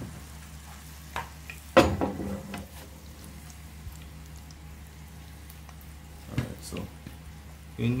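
Oxtail pieces searing in hot oil in a pan on high heat: a steady sizzle, with a sharp knock about two seconds in and a few lighter knocks.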